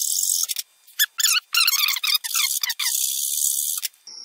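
Metal hand file rasping across the edge of a Nikkor lens aperture ring, cutting a notch. There are several strokes: a long one at the start, a run of shorter ones in the middle, and another long one near the end.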